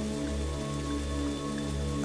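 Slow ambient background music of steady held tones over a continuous rain-like hiss.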